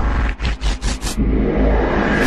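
Cinematic title sound effect: a deep bass rumble under a hissing sweep. It is broken by a quick stutter of about five short bursts from half a second to a second in, then runs on steadily.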